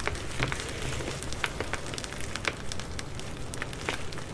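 Koh-I-Noor mixed-colour pencil lead in a lead holder scratching across paper as words are written, a steady dry scratching with many small irregular ticks from the lead.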